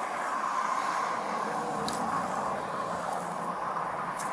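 Steady outdoor vehicle noise, an even rush that swells slightly over the first couple of seconds, with a faint click about two seconds in.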